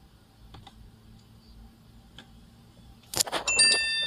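A faint steady low hum, then about three seconds in a loud clatter of handling clicks followed by a high metallic ringing of several tones that starts in quick succession and carries on until it cuts off.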